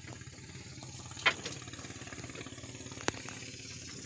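A small engine running steadily at low speed, a low even hum, with a brief sharp click about three seconds in.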